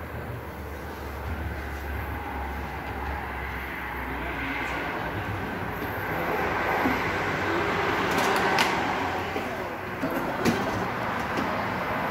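Steady mechanical background noise of a car service bay: a low hum at first, then a broader noise that grows a little louder about halfway. A few sharp clicks and knocks come in the second half.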